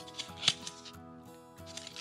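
Cardboard matchbook being handled and flipped open, with a sharp paper snap about half a second in and a few lighter clicks, over quiet background music.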